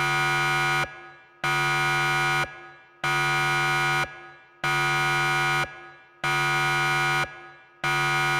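Alarm buzzer sound effect: a low, harsh buzzing tone about a second long, repeated about every one and a half seconds with silent gaps between, six times.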